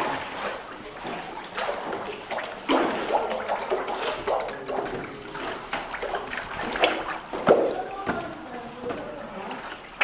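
Water sloshing and splashing in a papermaking vat as a wooden screen frame is dipped and worked through the watery paper pulp, in irregular splashes.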